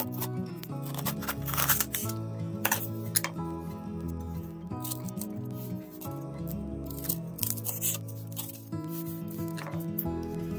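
Gentle background music, with a few sharp cuts of a kitchen knife slicing through a poblano pepper onto a wooden cutting board, mostly in the first few seconds.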